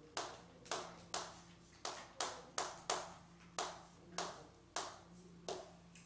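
Chalk writing on a blackboard: about a dozen short, sharp taps and scrapes of the chalk, roughly two a second.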